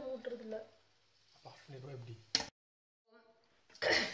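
Speech in short broken fragments, then a click and about a second of dead silence at an edit cut. Speech starts again near the end.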